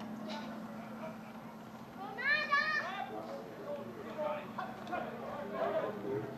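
Scattered distant voices of players and spectators at an outdoor football game, with one high-pitched shout about two seconds in.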